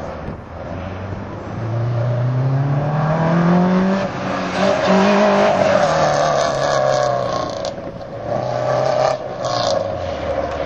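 Subaru Impreza 2.5RS's flat-four engine under hard acceleration through an autocross cone course: the engine note climbs for about two seconds, dips briefly, climbs again, then falls away as the driver lifts.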